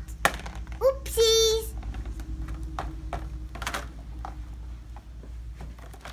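Hands handling a plastic toy scooter and its cardboard packaging: scattered light clicks and knocks, with a short child's vocal sound about a second in.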